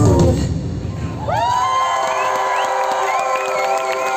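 The band's music stops about half a second in and a concert crowd cheers, with many high voices screaming from just over a second in. A steady held note sounds underneath.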